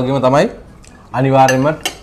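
A man's voice, the loudest sound, sounding twice, with metal spoons and forks clicking against ceramic plates during eating, including a couple of sharp clinks near the end.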